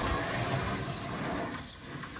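A 100-watt slide-out solar panel being pulled out along its metal runners: a steady sliding noise that fades away about a second and a half in.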